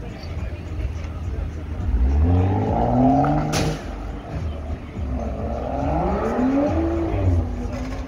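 A vehicle engine accelerating, its pitch rising over about two seconds, then rising again a little later and levelling off, with a sharp click between the two. Low wind rumble on the microphone underneath.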